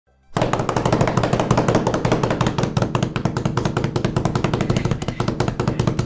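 A fast drum roll of rapid, even strokes over a sustained low note, starting suddenly a moment in.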